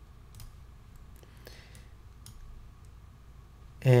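Several faint, irregularly spaced computer mouse clicks over a low steady room hum.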